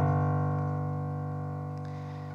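A low note on a Casio electronic keyboard's piano voice, held and slowly dying away. It is one of the low notes that stand for the lake's cold bottom-water temperatures.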